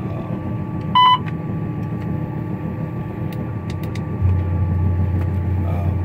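CH570 sugarcane harvester's diesel engine running steadily, heard from inside the cab, with a short electronic beep about a second in as the joystick button is pressed. A few faint clicks follow, and a deeper steady hum comes in about four seconds in.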